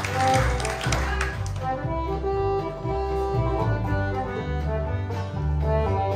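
Live band playing an instrumental tune: held melody notes over a moving bass line, with a rougher noisy wash in the first second or so.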